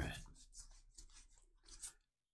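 Faint rubbing and light scraping of Magic: The Gathering cards sliding against one another as a stack is flipped through by hand, several short strokes a few tenths of a second apart.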